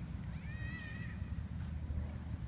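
A single high-pitched animal call, slightly rising then falling and lasting just under a second, over a steady low rumble.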